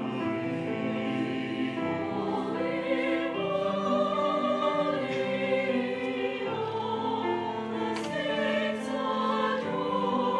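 Church choir singing a slow anthem in sustained, held chords, the upper voices wavering with vibrato.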